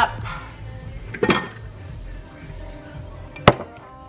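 Kitchen handling sounds: a softer knock about a second in, then a single sharp clink near the end as a glass tumbler is set down on a hard countertop.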